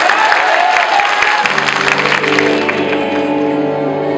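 Audience applause in a large hall, then performance music starts about a second and a half in, with steady held notes.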